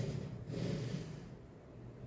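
A man breathing out once, a soft exhale about half a second in that lasts under a second, then faint room tone.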